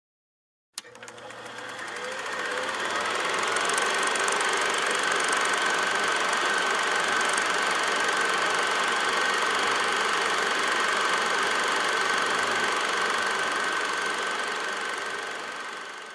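A machine running steadily, with a faint high whine held throughout. It starts with a short click about a second in, swells up over the next few seconds and fades out at the end.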